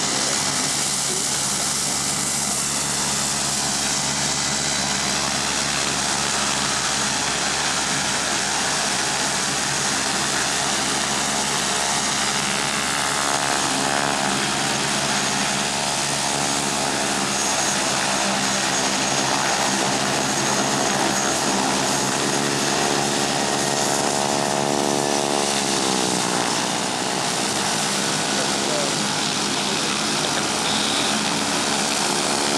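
Air Tractor crop-spraying plane's engine and propeller running steadily on the ground, with the pitch falling about five seconds before the end.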